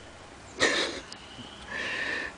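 Two short breathy huffs from a man, about half a second in and again near the end, like a quiet, excited laugh.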